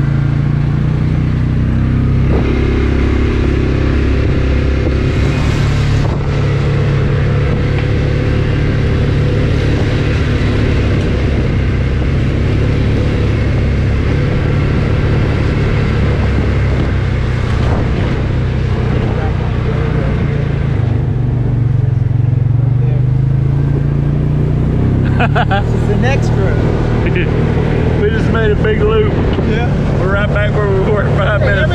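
Engine of a side-by-side utility vehicle running steadily as it drives along a dirt trail, a low, even drone heard from inside the open cab.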